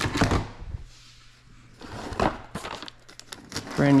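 Handling noise as goods are sorted: a rustling, clattering burst as a small plastic heater is set into a plastic tote, then a sharp knock and a few clicks and crinkles as cellophane-wrapped gift boxes are picked up.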